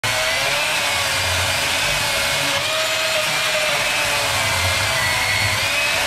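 Milwaukee battery-powered chainsaw cutting through a log, its motor whine and chain running steadily under load with the pitch wavering slightly as the bar bites into the wood.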